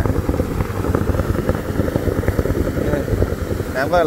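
Hot spring water jet spouting forcefully and splashing back down into its pool: a loud, steady rushing noise, very strong.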